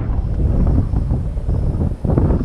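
Wind buffeting the camera microphone: an uneven low rumble with no clear tone.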